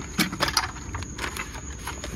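A boxed giant Rapala lure being pulled down and handled: a few quick knocks and scrapes of the packaging, over a low steady background rumble.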